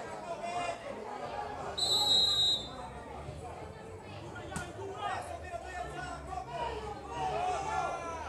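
A referee's whistle blows once, a steady shrill tone lasting under a second, loud over the spectators' chatter. A single sharp knock follows a couple of seconds later.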